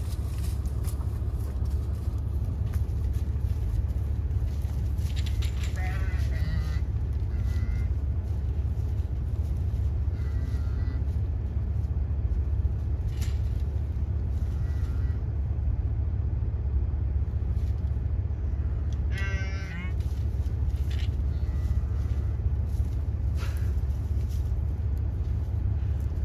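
Pickup truck engine idling, a steady low rumble. Faint distant calls come over it now and then, with one brief louder wavering call about twenty seconds in.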